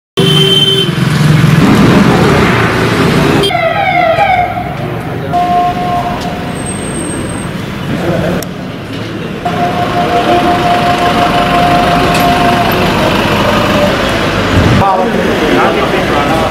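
Outdoor sound of vehicles and people's voices, in several short edited segments that cut abruptly. A brief wavering, gliding wail comes about four seconds in, and a steady held tone sounds through much of the second half.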